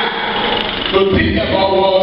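A man's voice through a microphone and loudspeakers, with held, sung pitches like chanting.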